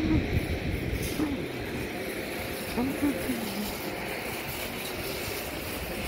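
Steady low outdoor rumble, with faint low voice sounds a few times: near the start, about a second in and around three seconds.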